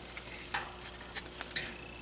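Plastic fan control housing being handled and lifted away, giving faint scattered clicks and light rattles, like loose debris shifting inside it.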